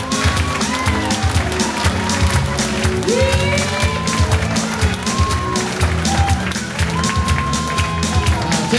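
Live country band playing an instrumental with a steady beat and a bass line, its melody notes sliding up and down in pitch.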